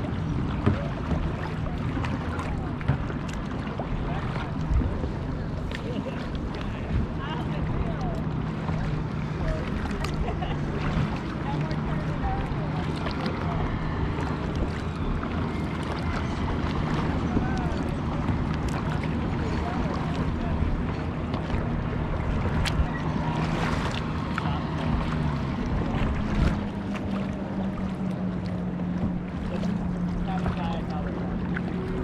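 Boat moving across choppy lake water: a steady rush of wind and water with occasional splash ticks, under a low, even drone that rises a little in pitch near the end.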